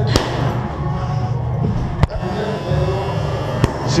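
Boxing gloves smacking into the coach's focus mitts: three sharp hits, just after the start, about two seconds in and again near the end, the middle one the loudest. Steady background music plays under the hits.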